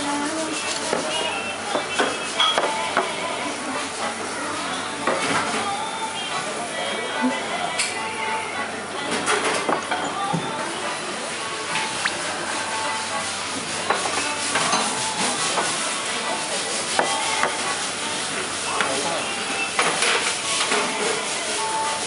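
Busy restaurant ambience: background voices with scattered clinks and clatter of dishes and cutlery.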